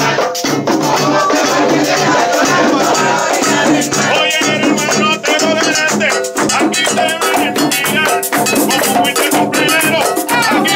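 Live plena music: pandero frame drums beating a steady rhythm, with a rattling percussion part and voices singing over them, the singing coming up strongly about four seconds in.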